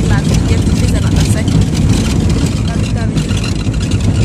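Steady low rumble of a car on the road, heard from inside the cabin, with a woman's voice talking faintly over it.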